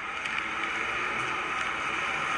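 Steady outdoor background noise, an even hiss and rumble with no distinct events.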